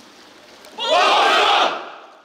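A formation of soldiers shouting a short greeting in unison in reply to the command to salute. The massed shout comes a little under halfway in, lasts under a second, then fades.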